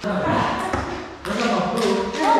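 People talking and laughing in a large room, with a couple of short, sharp taps.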